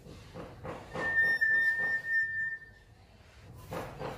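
Caged common hill myna giving one long, steady whistle on a single pitch, lasting nearly two seconds.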